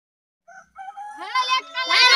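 Children shouting together in a long drawn-out cheer. One voice starts about half a second in, others join, and it grows louder near the end.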